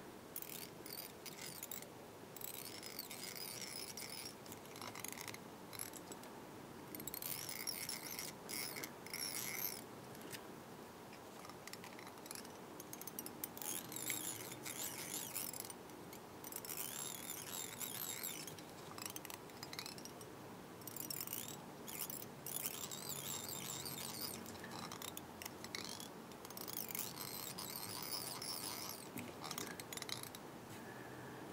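Faint, intermittent rustling and scraping of fingers working tying thread and a foam strip around a small fly hook, in short bursts a few seconds apart.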